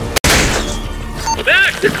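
Background music with a sharp hit and a momentary dropout at a cut a fraction of a second in, then a voice starting to shout near the end.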